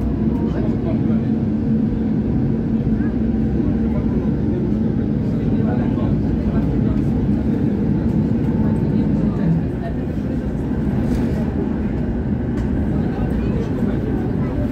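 Tram running along street track: a steady low rumble of wheels on rails with a constant hum.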